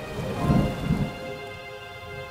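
Deep thunder rumble with rain, swelling about half a second in and again about a second in, under faint sustained music notes.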